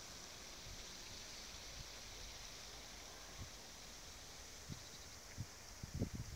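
Faint, steady outdoor background hiss, with a few soft low bumps in the second half.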